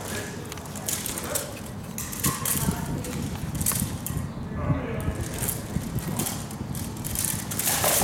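Armoured sparring: scuffing footsteps and the rattle of armour, broken by sharp knocks of weapons against a shield, with the loudest knocks near the end as the fighters clash. Voices talk in the background.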